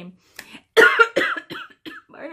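A woman coughing: a short fit of several coughs, loudest about a second in.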